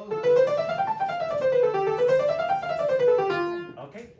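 Grand piano playing quick runs of notes that climb and fall back twice over a low held bass note. The playing stops just before the end.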